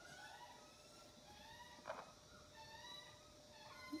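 Near silence with a hen's faint, soft pitched murmurs: short sliding calls every half second or so. A single click about two seconds in.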